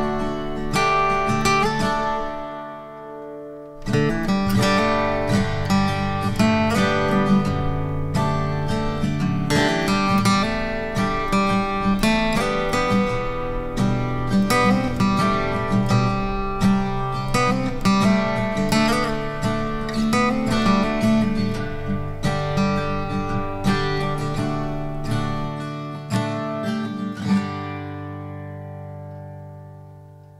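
Background instrumental music led by plucked acoustic guitar, dipping briefly about three seconds in and fading out near the end.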